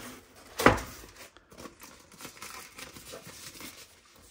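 Packaging rustling and crinkling as a portable monitor in its thin protective sleeve is lifted out of its foam box tray, with one louder, sharp rustle just under a second in and softer scattered rustles after.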